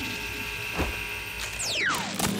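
Cartoon sound effects: a steady electronic hum with a click about midway through, then a quick falling whistle near the end.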